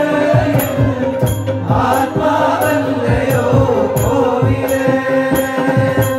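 Several men singing a devotional chant together, amplified through microphones, over sustained electronic keyboard tones and percussion keeping a steady beat.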